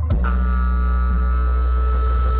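Live blues rock band holding out a sustained chord with the drums stopped: a low bass guitar note rings steadily under long, steady higher notes.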